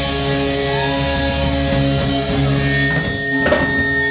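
Live punk rock band with electric guitars holding a long ringing chord as the song winds down, with a couple of drum hits near the end.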